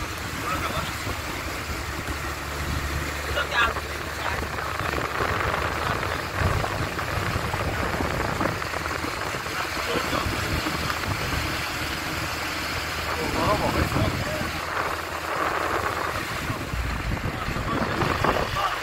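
Car driving at road speed with the phone held out of the side window: a steady rush of wind and tyre and engine noise, with indistinct voices talking over it.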